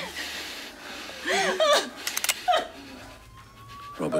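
A woman sobbing and whimpering in distress, in short broken cries about a second and a half in and again a second later. A faint thin tone rises slowly underneath near the end.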